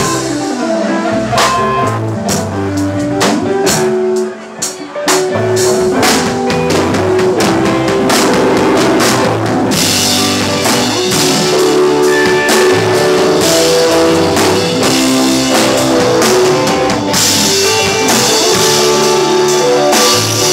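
Live rock band playing an instrumental passage on drum kit, guitar and keyboards. The music drops briefly about four seconds in, then comes back fuller, with cymbals crashing from about halfway.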